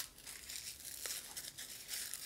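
Faint crinkling of white tissue wrapping from a new shoe as it is handled, with a few soft ticks.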